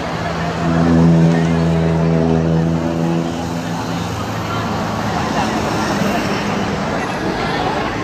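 Crowd chatter from a street march, with a motor vehicle's engine running close by, loudest from about half a second in until about four seconds in.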